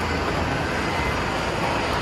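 Steady background roar of a large shopping-mall atrium, an even noise with no distinct events.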